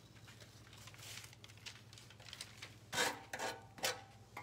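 Quiet handling of craft materials over a low steady hum, with two brief scuffs, one about three seconds in and one just before the end, as a sanding block is picked up.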